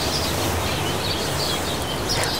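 Steady outdoor background noise with a low rumble, and small birds chirping now and then.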